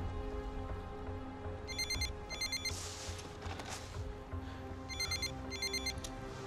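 A telephone ringing with an electronic trilling ring in two short pairs of bursts, the second pair about three seconds after the first, over a low, steady music score. A short burst of hiss falls between the two pairs.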